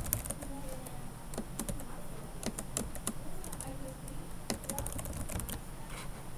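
Computer keyboard being typed on: irregular keystroke clicks, some in quick runs, as a file name is entered.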